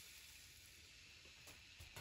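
Near silence: faint room tone with a few faint clicks.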